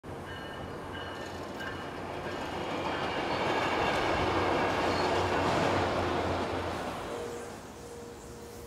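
Railroad crossing warning bells chiming, then a passenger train passing close by; the train's noise swells to a peak midway and fades near the end.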